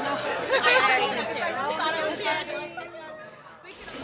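Several people laughing and chattering over one another in a lively room, cut off abruptly near the end.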